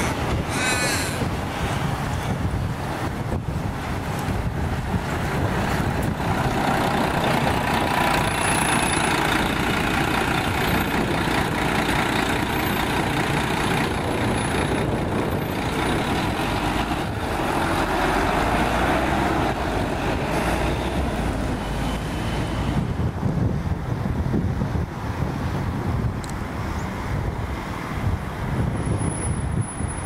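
City bus engine running as a bus pulls away and drives off, a steady rumble that swells twice, about a quarter and again about two thirds of the way through.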